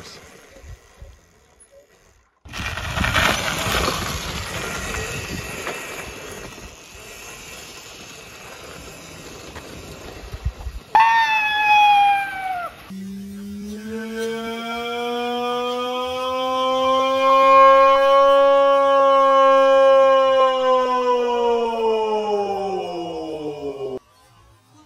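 Electric motor and chain drive of a 48-volt, 1000-watt converted kids' quad bike whining as it rides. A rushing noise comes first, then a short falling whine about halfway through. Over the last ten seconds a long whine climbs slowly in pitch and then falls as the quad speeds up and slows down.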